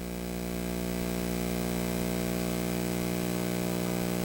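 Steady electrical mains hum with a stack of evenly spaced overtones and a light hiss, picked up in the recording's audio chain.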